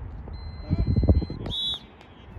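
A referee's whistle gives one short, shrill, warbling blast about three-quarters of a second before the end, cutting off sharply. It comes after a fainter steady high tone and sits over a low rumble with brief sideline shouts.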